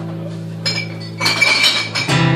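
Acoustic guitar notes ringing on between sung lines, with bright, ringing clinks about halfway through.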